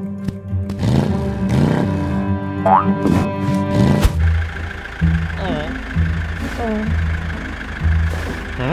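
Cartoon soundtrack: music with a rising comic boing a few seconds in and a sharp hit about halfway. After that, a cartoon car engine runs under short, gliding vocal squawks from a cartoon character.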